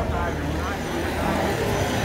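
Street sound of a motor vehicle engine running close by, a steady low hum, with faint voices in the background.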